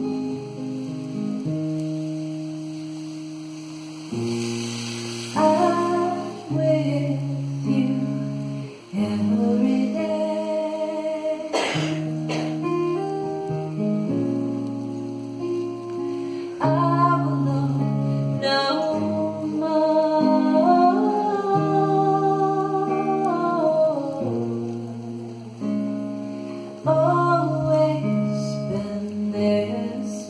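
A woman singing a slow devotional song to acoustic guitar, her sung phrases alternating with held guitar chords. One sharp knock comes about twelve seconds in.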